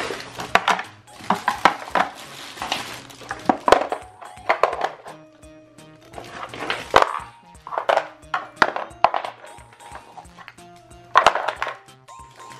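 Wooden toy blocks knocking and clattering as they are put one after another into the wooden tray of a baby push walker, a string of irregular clicks and knocks. Soft background music with held notes plays under it.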